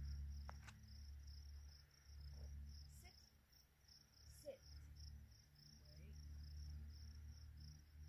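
Near silence but for faint, steady high-pitched chirring of insects, pulsing evenly, over a low rumble; a couple of faint clicks come about half a second in.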